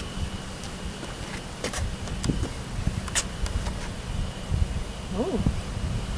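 Wind rumbling on the microphone, with a few light clicks and a faint steady high whine.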